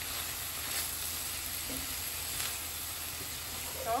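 Ground beef and eggs sizzling steadily in a hot cast iron skillet as they finish cooking dry.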